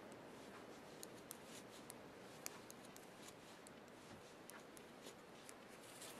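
Faint, irregular light clicks of metal knitting needles touching as stitches are purled, over quiet room tone.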